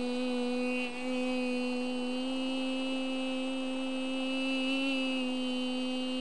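A woman humming one long, steady low note with a slight waver. It breaks off briefly about a second in and then carries on. The humming is wordless, sung along to her surroundings.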